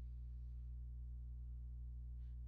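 Quiet pause with only a steady low hum underneath, no other sound.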